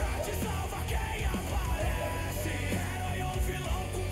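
A song with sung vocals in Portuguese over backing music.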